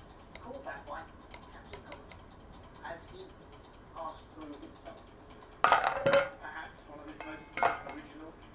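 Metal flour sifter worked over a stainless steel mixing bowl: a few sharp metallic clicks in the first two seconds, then louder clattering of metal against the bowl about six seconds in and again near the end.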